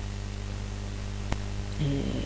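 Steady electrical mains hum with hiss from the recording chain, with a single sharp click a little after halfway through.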